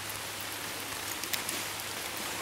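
Light rain falling on leaves and the forest floor as a steady, even hiss, with a few faint ticks of drops about a second and a half in.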